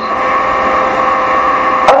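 Steady electrical hum and hiss with a few steady whining tones. A sharp click comes near the end.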